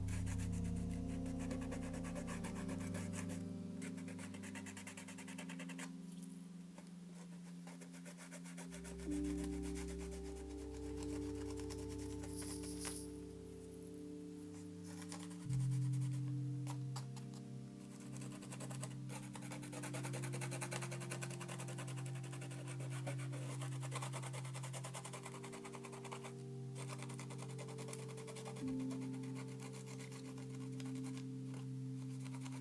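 Background music with slow, sustained chords and low bass notes that change every few seconds.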